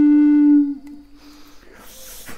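Wooden contrabass pimak (Native American-style flute) holding one low note, which stops about half a second in and fades away. Faint hissing noise follows near the end.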